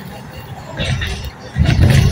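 Road noise of a moving vehicle heard from inside, with a loud low rumble for about half a second near the end.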